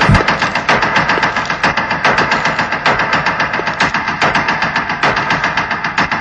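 A fast, continuous rattle of sharp cracks, many a second, that runs without a break.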